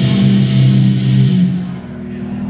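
Live heavy metal band's amplified electric guitar and bass holding a sustained chord that rings out and fades about a second and a half in.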